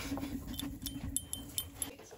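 Light metallic clinks of a dog's collar tags, a few short clicks as the dog noses in close, over a soft, low, steady hum that fades out.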